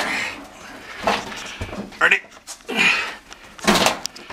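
Men heaving a heavy old Carrier HVAC unit up a staircase in timed lifts: a called "Ready", effortful breaths and grunts coming about once a second, with the unit knocking against the steps. The loudest strain comes near the end.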